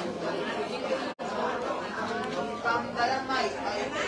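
Several people talking at once, overlapping chatter in a room, with a brief cut-out of all sound about a second in.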